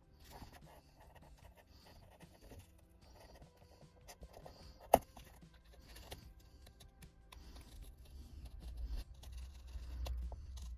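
Hobby knife scoring along a paper template into balsa wood, faint light scraping strokes. A single sharp click about halfway through is the loudest sound.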